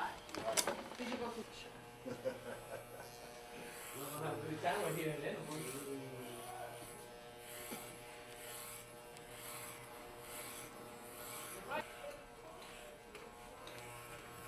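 Electric hair clippers buzzing steadily as they shave a head down to the scalp.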